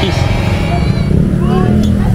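People's voices talking over a steady low rumble, with the voices coming in about a second in.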